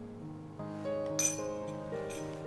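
Background music, with a spoon clinking once against a bowl about a second in, ringing briefly.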